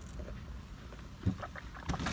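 Low, steady rumble inside a car cabin, with a couple of faint soft knocks about a second in and near the end.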